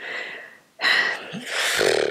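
A woman's breathy sigh close to the microphone: a short soft breath, then a longer exhale that trails into a low, creaky "uh" near the end.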